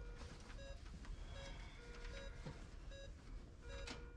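Electronic medical equipment beeping: short beeps at one pitch, repeating irregularly, a few held longer, over faint room noise.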